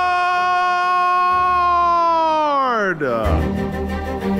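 A man's voice holding one long, high sung note, which slides steeply down in pitch and breaks off about three seconds in. Music then starts, with bowed strings.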